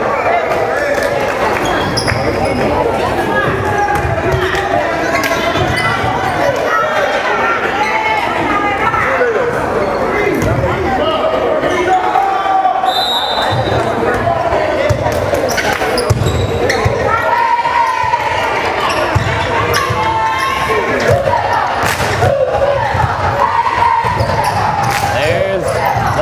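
Basketball bouncing on a hardwood gym floor, with voices of players and spectators echoing through the gymnasium.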